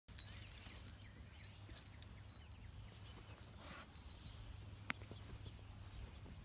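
Light metallic jingling at irregular moments, as of a dog's collar tags, while the dog walks and sniffs through grass, with one sharp click shortly before the end.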